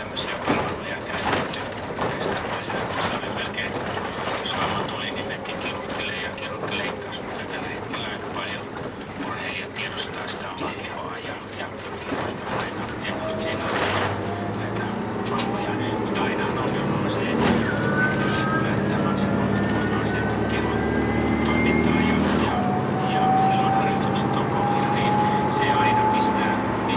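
Inside a city bus: the body and fittings rattle and click over the road, then the drivetrain whine climbs steadily as the bus accelerates onto a main road. About 22 seconds in the whine drops sharply at a gear change and starts climbing again.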